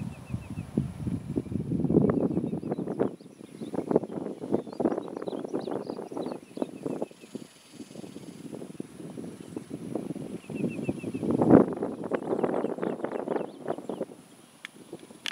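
Wind gusting over the camera microphone outdoors, an uneven rumble that swells and drops, strongest about two seconds in and again near the end. Faint bird chirps come through in places.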